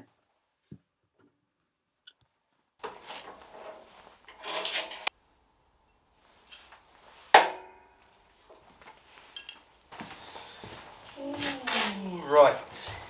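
Steel workshop parts being handled: scraping and clinking for a couple of seconds, then one sharp metallic clank that rings briefly, followed by more handling noise near the end.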